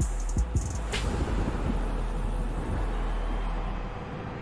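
Hip-hop track playing, with deep bass hits that drop in pitch and short high ticks in the first second. The beat gives way to a steady low bass bed.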